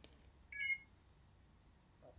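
A short, high electronic beep about half a second in, otherwise quiet.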